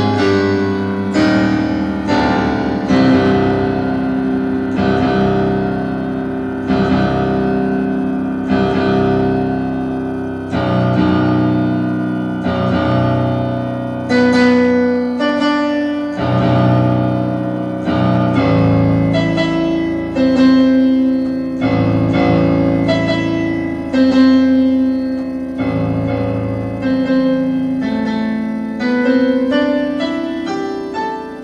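Solo piano playing a slow piece: chords and bass notes struck about once a second, each left to ring.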